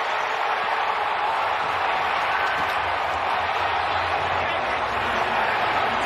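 Football stadium crowd noise, a steady din of many voices, right after a game-ending overtime touchdown.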